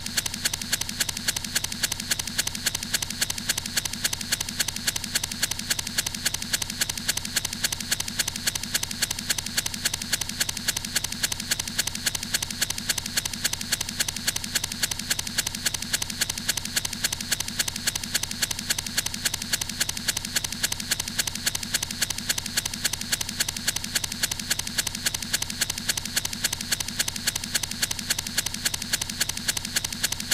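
A tiny fragment of the soundtrack looped over and over, several times a second, making a steady, mechanical-sounding stutter that does not change.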